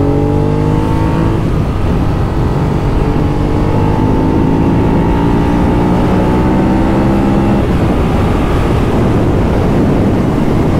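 Ducati Monster 821's L-twin engine pulling under acceleration at speed, its pitch climbing slowly. The engine note breaks off about a second and a half in, climbs again, and falls away near eight seconds. Heavy wind rush lies under it.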